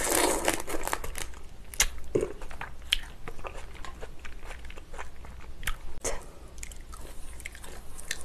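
Close-miked chewing and biting of a black tiger prawn: a dense burst of wet mouth noise at the first bite, then scattered sharp clicks and softer chewing.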